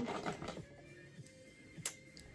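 Small clicks and light rattling of makeup products being handled and searched through, with one sharp click just before the end.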